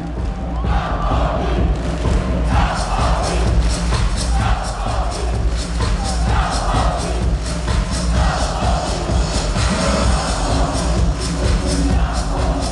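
Loud amplified club dance music from a DJ set, with a heavy bass and a steady beat that fills out about two and a half seconds in. A large crowd shouts along in repeated bursts.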